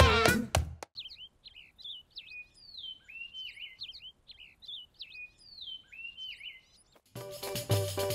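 Birds chirping and whistling in short, repeated phrases for about six seconds. Loud sung music cuts off just under a second in, and music with a drum beat starts again near the end.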